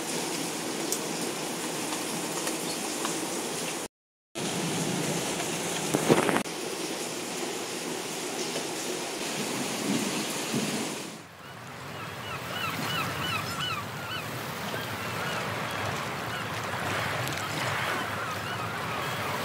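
Steady rain falling, an even hiss that cuts out briefly about four seconds in.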